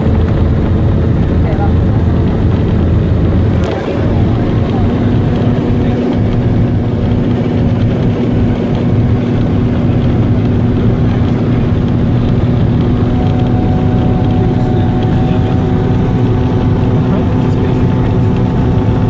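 Hovercraft engine running at a steady cruise, a loud, even drone with a constant hum, heard from inside the passenger cabin.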